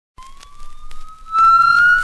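The record opens on one sustained, siren-like tone that glides slowly upward in pitch, with a few record-surface clicks at first. About two-thirds of the way in it gets louder and a low accompaniment comes in under it.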